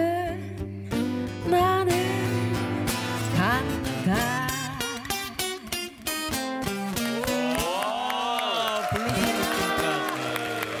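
A woman singing long, gliding notes in a slow blues, accompanied by an acoustic guitar.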